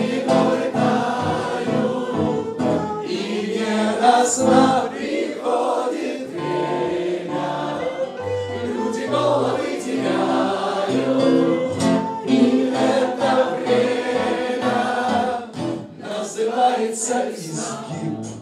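Many voices singing a song together in a room, with instrumental accompaniment underneath.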